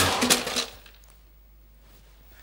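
A couple of sharp clattering knocks as the music cuts off in the first half-second, then quiet room tone.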